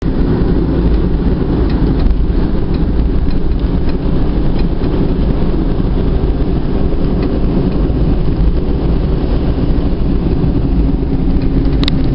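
Steady engine and road noise heard from inside a moving car.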